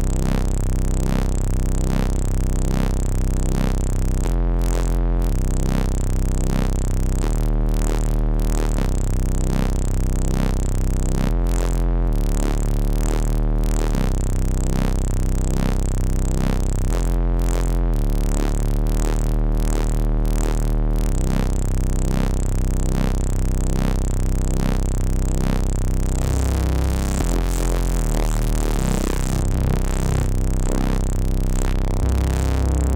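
Massive-style synthesizer patch built in the OSCiLLOT modular synth, playing a run of changing bass notes with a fast pulsing throughout.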